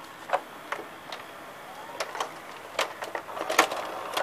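Samsung VR5656 VCR's loading mechanism ejecting a cassette: the loading motor unthreads the tape and the cam gear and arms lift the cassette out, giving a run of irregular mechanical clicks and clacks over a faint motor whirr, loudest near the end.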